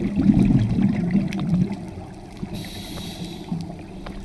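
Scuba regulator breathing heard underwater: exhaled bubbles rumbling and gurgling for about the first two seconds, then a short hiss of inhalation through the regulator past the halfway mark. Faint scattered clicks run underneath.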